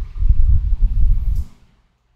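A low rumbling noise on a microphone, uneven and pulsing, stopping about a second and a half in.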